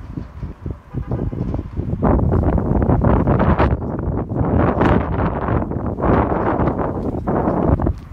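Wind buffeting the phone's microphone in loud, gusty rumbles, growing much stronger about two seconds in.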